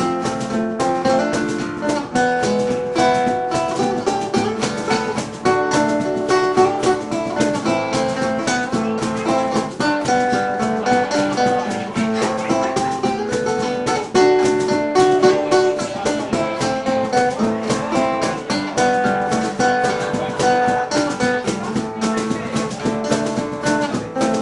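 Acoustic guitar played solo in an instrumental passage: steady, rapid strumming with chords ringing out.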